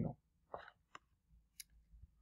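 A few faint, short clicks in a quiet pause, the sharpest about one and a half seconds in: a computer click advancing a presentation slide.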